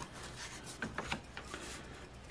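Faint rubbing with a few soft ticks, loudest about a second in, from a metal scratch token and paper scratch-off lottery tickets being handled on a wooden table.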